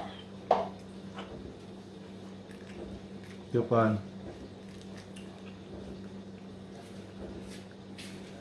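A metal spoon clicks sharply twice near the start, then scrapes quietly as it scoops a boiled balut (fertilized duck egg) out of its shell. A steady low hum runs underneath.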